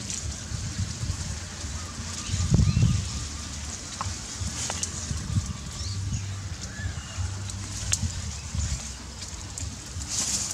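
Dry grass and reed stalks rustling against a handheld microphone, with a low wind and handling rumble, a louder bump about two and a half seconds in, and a few faint high chirps.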